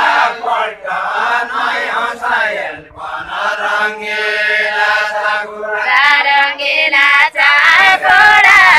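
A group of voices singing a Nepali deuda song in a chant-like unison line. About six seconds in, higher-pitched voices take up the melody.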